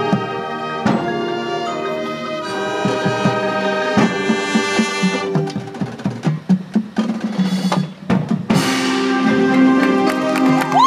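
Marching band playing: brass holding sustained chords over drums and pit percussion, with sharp hits about one and four seconds in. A choppier, drum-heavy passage follows in the middle, then the brass comes back in loud with a held chord near the end.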